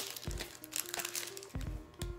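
Foil wrapper of a Pokémon card booster pack crinkling in the fingers as it is opened, with soft background music under it.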